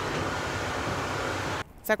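Steady hissing running noise heard from inside a moving vehicle, cutting off suddenly near the end.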